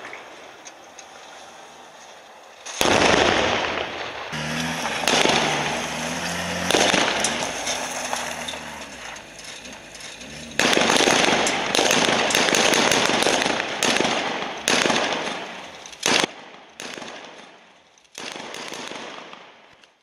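Explosions going off: a heavy blast about three seconds in and another about eleven seconds in, each with a long rumbling decay, then shorter sharp bangs near the end. A vehicle engine revs with a wavering pitch between the first two blasts.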